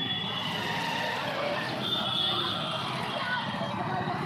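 Busy street ambience: crowd chatter and passing motorbikes, with a high-pitched call or whistle about two seconds in.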